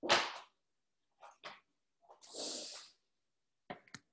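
An exercise mat being flapped out and dropped onto the floor: a sharp slap at the start, two short rustles, a longer whooshing rush about two seconds in, and a few quick clicks near the end.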